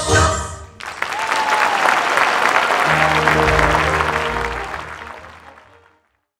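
Stage musical number ending with the cast singing over the accompaniment, which stops sharply about a second in. Audience applause follows, with sustained instrumental tones coming in under it halfway through, and all of it fades out near the end.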